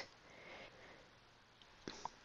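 Near silence: room tone, with one faint short click near the end.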